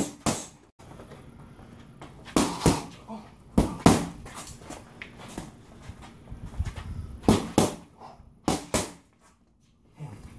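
Boxing gloves striking leather focus mitts in quick one-two combinations: sharp slaps in pairs about a third of a second apart, four pairs in all. Near the end the sound drops away briefly.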